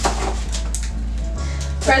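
A few short, sharp crackles from a Prince Polo chocolate wafer bar being unwrapped and handled, over steady background music.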